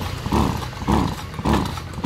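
Recoil pull-starter of a 26 cc two-stroke brush cutter yanked four times in quick succession, about two pulls a second, the engine cranking without catching. The owner reckons it is out of fuel.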